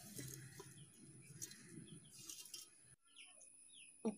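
Near silence: faint room tone with a few faint, short high chirps.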